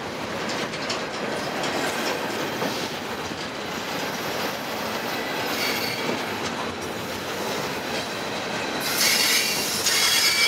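Double-stack intermodal well cars rolling past close by, a steady rumble with wheels clacking over the rail joints. High wheel squeal comes in briefly around the middle and grows louder near the end.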